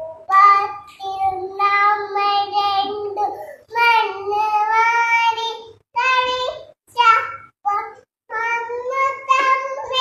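A small girl singing without accompaniment, holding notes in short phrases with brief pauses between them.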